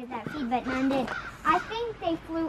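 Indistinct talking: short, broken-up voiced phrases that the speech recogniser did not turn into words.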